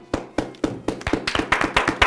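A few people clapping their hands. It starts as scattered single claps and thickens into quicker, overlapping claps about a second in.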